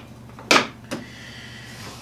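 Front latch of a Milwaukee Packout organizer being unsnapped: a sharp click about half a second in and a lighter click just before one second.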